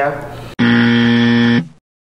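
A 'wrong answer' buzzer sound effect marking a mistake: one flat, steady buzz about a second long that cuts in suddenly about half a second in, then fades quickly.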